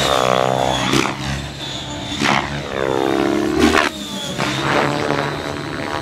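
Align T-Rex 700X electric radio-controlled helicopter flying aerobatics: its rotor sound sweeps up and down in pitch as the blades load and unload, with sharp whooshes of the blades about one, two and a bit, and three and a half seconds in. A thin, steady high whine from the motor and drivetrain runs underneath.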